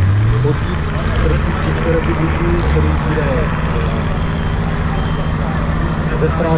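Engine of an off-road Jeep rising in pitch over the first half second, then running at a steady pitch as the Jeep drives; people talk over it.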